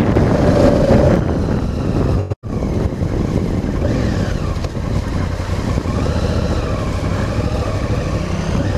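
Honda Africa Twin's parallel-twin engine running under way as the bike is ridden along a gravel track, heard from on board the bike. The sound cuts out for a split second about two and a half seconds in.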